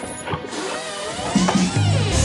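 A heavy wooden door unlatched with a few clicks and swung open with a wavering hinge creak, with soft music underneath.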